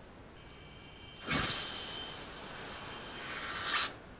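A short low thump about a second in, then a steady hiss lasting about two and a half seconds that swells and cuts off suddenly, from the episode's soundtrack.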